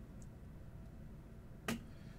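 Quiet room tone with a single sharp click about three-quarters of the way through.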